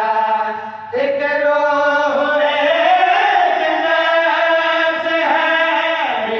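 A man's voice chanting a qasida in long, held, wavering notes, with a short break for breath just before a second in.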